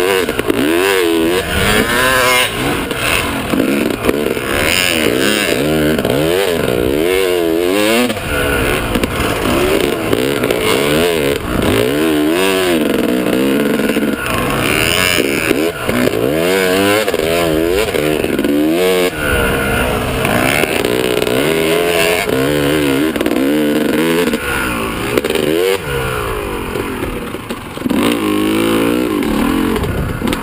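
Dirt bike engine heard up close from the bike itself, revving up and dropping back again and again as the rider accelerates and brakes around the turns of a motocross track. Near the end the engine falls back as the bike slows.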